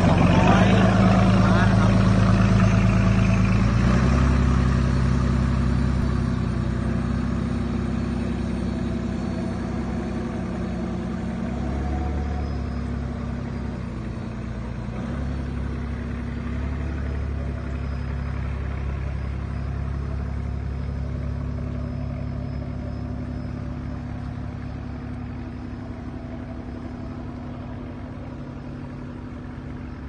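Cummins 210 hp marine diesel of a Shamrock 26 boat running under way. It is loudest at first and fades steadily as the boat moves off across the water, and the engine note shifts about four seconds in and again around twelve seconds.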